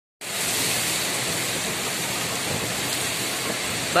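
Heavy rain pouring onto a flat rooftop: a dense, steady hiss that starts abruptly just after the beginning and holds at an even level.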